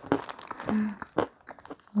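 Close-up chewing of a sweet, with sharp mouth clicks and small crunches several times, and a short hum of voice a little past the middle.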